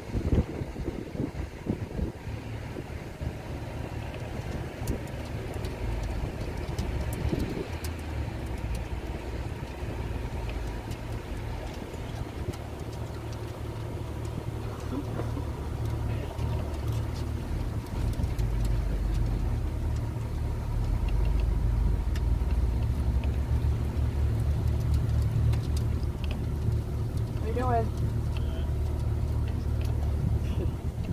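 Boat motor running at no-wake idle speed: a steady low hum that gets somewhat louder about two-thirds of the way through. A brief high chirp is heard near the end.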